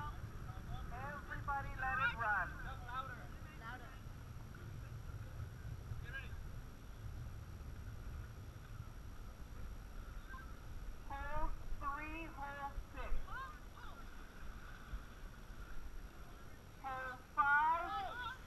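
Steady low rumble of wind and water on the microphone of a moving dragon boat. Over it come shouted calls and cheers from the paddling crew, in bursts near the start, around the middle and near the end.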